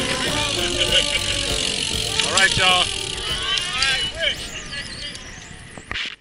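Indistinct voices calling out over road noise during a group bicycle ride, the sound fading down near the end.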